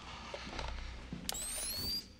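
A film sound effect of a pumpkin bomb being armed: a sharp click, then a high electronic whine that rises steadily in pitch.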